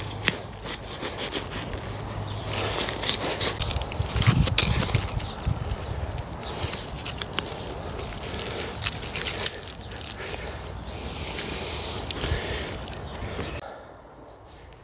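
Hand trowel digging and scraping in soil and bark-chip mulch, with irregular rustling and crackling of the wood chips as plants are set in.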